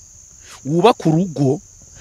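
Crickets trilling in a steady high-pitched drone, with a man's voice briefly speaking over it in the middle.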